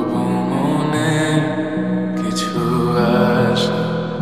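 Slowed, reverb-heavy lofi remake of a Bangla pop song: a male voice sings a drawn-out vocal line over soft sustained backing.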